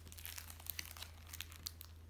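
Thin plastic clear file folder being picked up and handled, giving a quick run of crinkles and crackles with a few sharper snaps.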